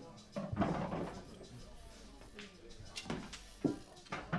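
Pool cue tip striking the cue ball in a soft click about a third of a second in, playing a gentle positional shot. A couple of faint light knocks follow near the end.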